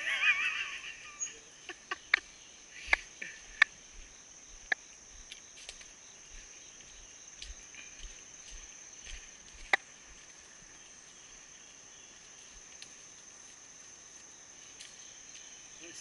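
Steady, high-pitched drone of insects in the woods. A short laugh opens it, and a few sharp clicks fall in the first ten seconds.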